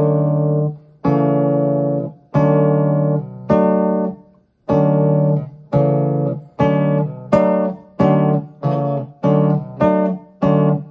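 Nylon-string classical guitar playing one chord at a time, each left to ring and fade, as chord-change practice across three chords. The chords come about a second apart at first, then, after a short gap near the middle, follow each other faster.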